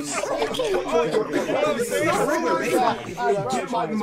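Many voices talking over one another at once: overlapping chatter.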